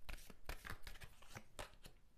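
A deck of oracle cards shuffled and handled by hand: an irregular run of soft flicks and taps, ending as a card is laid down on the table.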